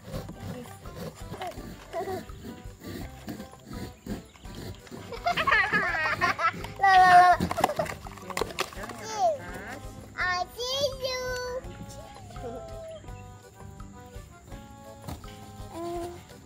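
Young children's high-pitched voices, excited and loudest from about five to eight seconds in and again around ten seconds, over background music.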